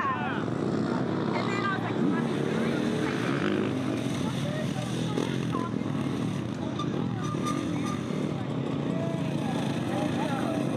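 Off-road motorcycle engines running, their note wavering up and down as dirt bikes pass on a dirt track, with indistinct voices in the background.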